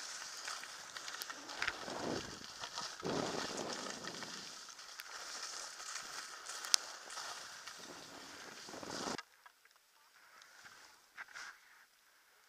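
Skis sliding and scraping over snow with wind rushing on the camera's microphone, swelling through the turns, with one sharp click a little past the middle. The rushing cuts off suddenly about three-quarters of the way through, leaving only faint ticks.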